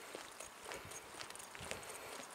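Footsteps of a person walking on an asphalt lane, a series of faint, regular steps.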